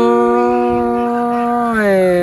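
A singer holding one long, steady 'oi' vowel in a folk-song exchange, the pitch sliding down near the end. A second, higher held tone runs under it and drops out about halfway.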